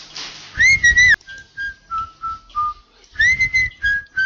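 A whistled jingle tune: a long note swoops up and holds, a run of short notes steps downward, and a second upward swoop comes near the end, over a soft low pulse.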